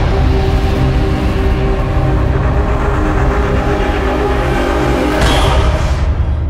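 Logo intro music: held, steady notes over a heavy low rumble, with a brief rush of noise about five seconds in.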